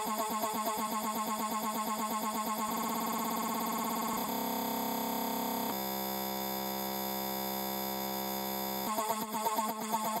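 A house/techno DJ mix in a breakdown with the bass and kick drum cut: a short choppy fragment repeats, speeding up in steps about three and four seconds in. Around six seconds it merges into a steady buzzing tone, which breaks back into the choppy repeat about a second before the end, the build-up before the beat returns.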